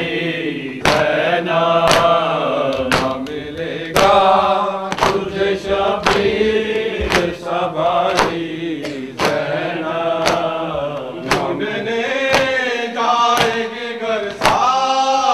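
Men's voices chanting a noha, a Shia lament, while mourners strike their chests with their open hands in matam. Each strike is a sharp slap, about one a second, in time with the chant.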